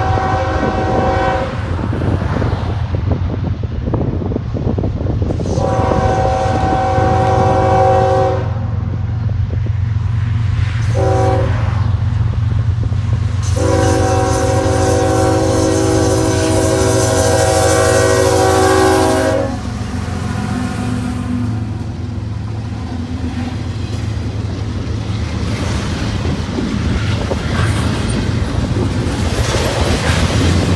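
Diesel locomotive air horn sounding a multi-note chord in the grade-crossing pattern: long, long, short, long, the last blast held for about six seconds. A steady low rumble of the passing train runs under it and goes on after the horn stops.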